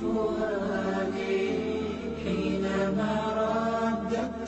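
A voice chanting a slow, drawn-out melodic line, with held notes broken by short pauses about once a second.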